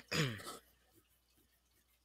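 A woman clearing her throat once, a short sound falling in pitch, at the very start.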